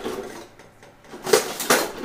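Metal kitchen utensils clattering, a few sharp knocks in quick succession past the middle, as a metal box grater is picked up to grate cucumbers.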